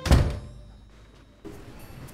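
A door slamming shut once: a single loud thud right at the start that dies away within about half a second.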